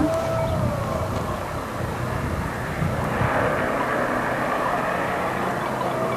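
A steady drone with hiss; a low hum stands out more clearly from about three seconds in.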